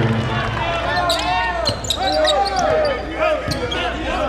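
Sneakers squeaking on a hardwood basketball court many times in quick succession, with a basketball bouncing.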